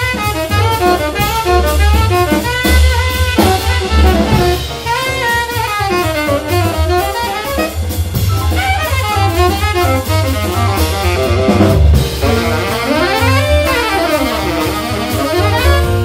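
Big band jazz: a tenor saxophone solo in quick, winding runs over bass and drum kit.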